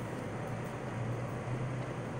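A steady low mechanical hum over a wash of outdoor background noise.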